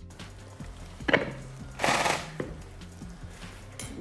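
Soft background music, with kitchen handling noises: a sharp click about a second in, a brief scrape around two seconds in, and another click near the end.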